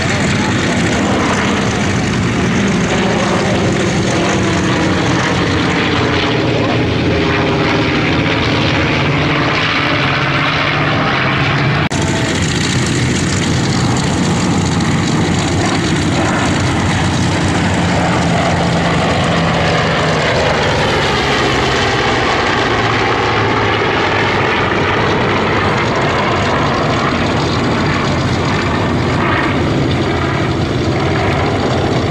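Piston-engine propeller aircraft flying overhead. First comes the steady drone of a twin-engine B-25 Mitchell bomber. After an abrupt change about twelve seconds in, a formation of three propeller fighters passes, their engine note sliding in pitch as they go by.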